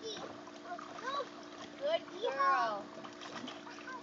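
Toddlers splashing and wading in water in a plastic wading pool, with short high-pitched child vocalizations about a second in and again around two seconds in.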